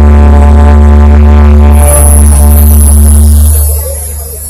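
A live band of violin and keyboards holds a long final chord over a very loud, deep bass drone. The chord fades out about three and a half seconds in, ending the piece.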